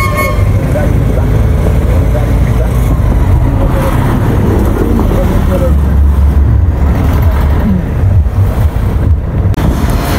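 Road traffic on a busy highway: motor vehicles passing close by with a continuous low rumble that swells loudest about midway through, and a brief horn toot right at the start.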